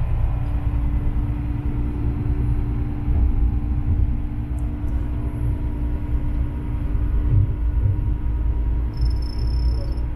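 Diesel railcar pulling away from a station, its engine running under load with a heavy low rumble and a steady hum, heard from inside the cab.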